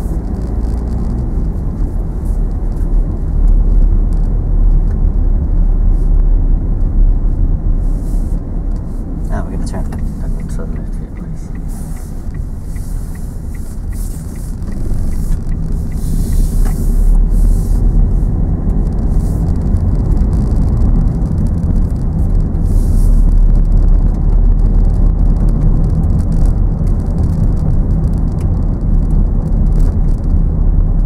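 Steady low rumble of a car's engine and tyres heard from inside the cabin, driving on a wet road. It dips slightly in the middle and is louder in the second half.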